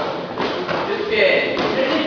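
Voices calling out during a full-contact karate bout, with two dull thuds of blows landing, about half a second in and again near the end.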